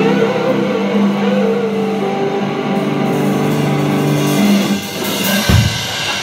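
Two electric guitars and a drum kit playing rock: a lead guitar holds a wavering, bent note over sustained ringing chords, which stop about four and a half seconds in as the song ends. A heavy drum hit with a cymbal crash closes it near the end.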